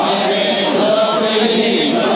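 A group of voices chanting together in a temple hall, several voice lines overlapping and running on without a pause.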